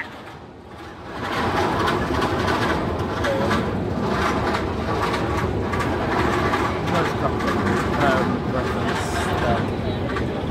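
A man laughing hard and at length, breathy and uneven, starting about a second in.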